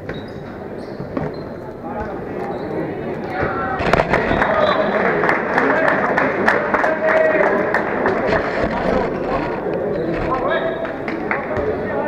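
Handball bouncing on an indoor court, a run of sharp thuds, over shouting and chatter from players and spectators in a reverberant sports hall. It grows louder from about four seconds in.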